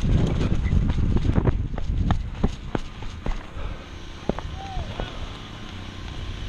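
Wind buffeting a body-worn camera's microphone, which gives way about two seconds in to a string of sharp, irregularly spaced clicks and knocks.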